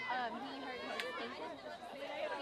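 Indistinct chatter of high-pitched voices talking close by, with one sharp click about halfway through.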